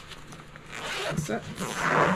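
A zipper on a black soft fabric case being pulled open, a rasp that builds over the second half and is loudest near the end.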